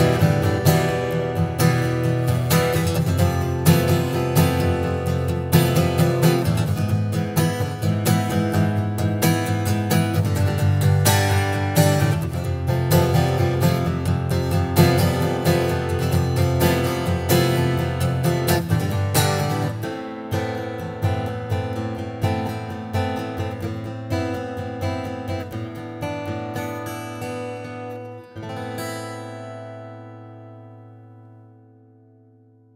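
Freshman FA600DCE acoustic guitar strummed in a steady rhythm. About two-thirds of the way in the strokes thin out, and near the end a final chord rings out and fades.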